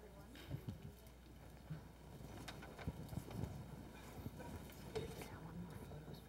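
Faint handling noise from a clip-on lapel microphone being adjusted: soft irregular knocks and rustles, more frequent from about two seconds in.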